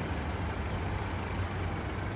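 Steady low rumble of a motor vehicle running.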